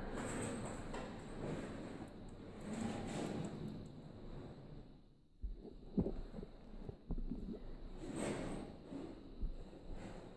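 Climbing down a caged steel ladder: rustling of clothing and handling noise, with a few sharp knocks of boots and hands on the metal rungs and frame in the second half.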